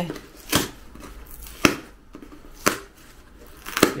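Cardboard parcel being torn open by hand, its thread-reinforced tape giving way in four short rips about a second apart.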